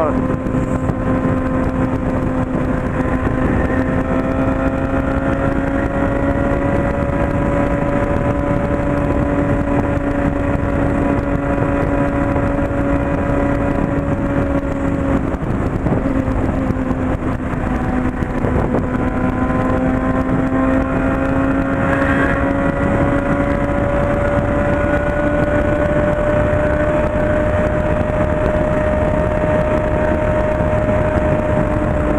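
Honda CB600F Hornet's inline-four engine running at a steady highway cruise, heard from the rider's seat with wind and road noise. Its pitch dips a little about halfway through, then climbs back up.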